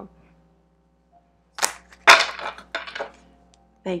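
A deck of tarot cards being shuffled by hand, starting about a second and a half in. It gives a few sharp snaps and short riffles; the loudest comes just after two seconds, and softer ones follow.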